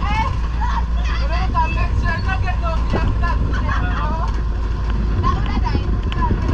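Steady low rumble of an open-sided tour truck driving along a dirt road, with passengers' voices over it.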